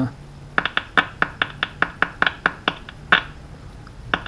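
Vintage tube radio crackling in rapid, irregular sharp clicks, several a second, as its wire antenna lead is handled and disconnected, over a faint steady hum. The crackle is the first noise the set has made as it comes up on reduced line voltage after restoration, a sign that it is starting to work.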